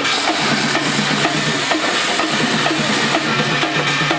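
Drums beating in a fast, busy rhythm over a dense wash of noise, loud and steady throughout.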